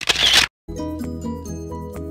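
A camera shutter sound effect, one short burst, followed about two-thirds of a second in by music with steady sustained notes.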